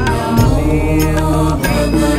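Devotional chant music: a sung mantra over a steady low drone, with a few sharp percussive strikes.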